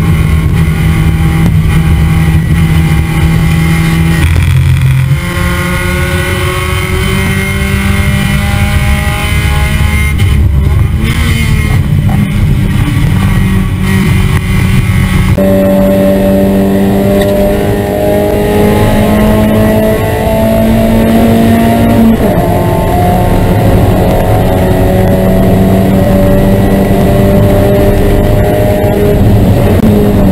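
Spec Miata race car's four-cylinder engine heard from on board at high revs under full throttle. Its pitch dips about five seconds in and then climbs slowly as the car accelerates. The sound changes abruptly about halfway, then keeps climbing gradually.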